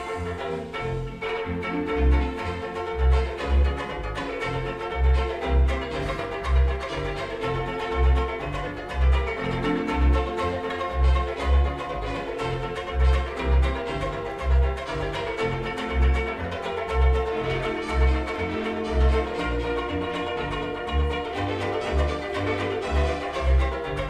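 Banjo ukulele strummed in an upbeat instrumental break of a comic music-hall song, over an accompaniment with a strong bass note about once a second.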